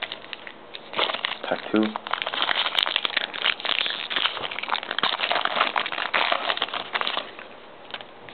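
Shiny wrapper of a trading-card pack crinkling as it is handled and opened, a dense crackle from about a second in until near the end.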